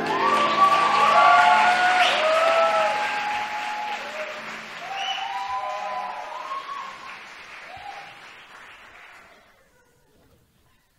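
Theatre audience applauding, with voices calling out over the clapping. The applause dies away over the last few seconds.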